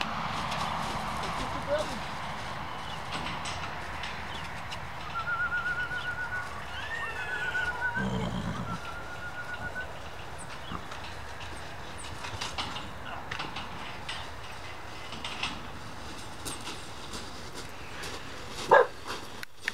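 Wind rumbling on the microphone. Several seconds in, a high wavering whine with a brief upward squeal comes from a puppy in the kennels, and scattered crunching footsteps on gravel follow near the end.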